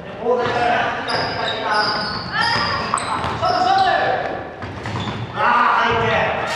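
Basketball game on a wooden gym floor: players calling out to each other, a basketball bouncing and short high shoe squeaks, all echoing in a large hall.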